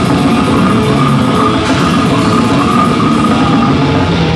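Extreme metal band playing live and loud: heavily distorted electric guitars over a drum kit, in a dense, unbroken wall of sound.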